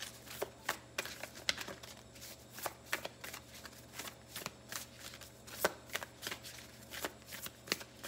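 A deck of Moonology oracle cards being shuffled by hand: irregular crisp card slaps and riffles, a few a second, with a couple of louder snaps in the second half.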